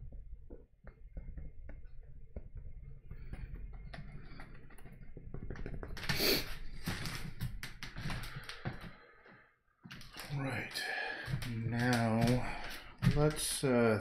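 A run of small clicks and knocks over a low rumble from close handling, a brief loud rush about six seconds in, then a man's voice murmuring indistinctly through the last four seconds.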